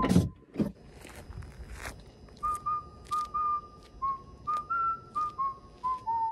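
A person whistling a tune of short, clear notes that step up and down in pitch, about three or four notes a second, beginning about two seconds in. A few soft knocks and clicks come before the whistling.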